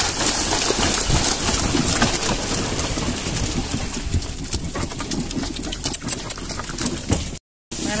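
Horse-drawn cart moving along a muddy, waterlogged track: a steady noisy rush with frequent irregular knocks and rattles. The sound cuts out completely for a moment just before the end.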